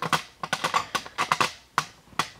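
About a dozen quick, light clicks and taps at an irregular pace.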